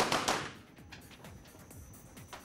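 A quick string of 9 mm pistol shots, about three in the first half second, ringing off the walls of an indoor range. After that only faint music is left.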